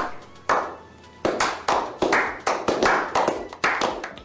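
A small group clapping a slow clap: single hand claps about half a second apart that quicken into faster applause.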